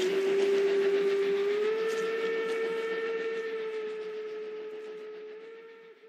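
Steam locomotive whistle sounding one long blast over the noise of a running train, its pitch stepping up slightly after about a second and a half, the whole sound fading away toward the end.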